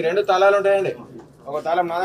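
A man's voice talking, in two stretches with a short pause between.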